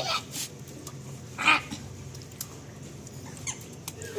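Labrador puppy giving short, high whimpering cries while being bathed: a brief rising one at the start and a louder one about a second and a half in.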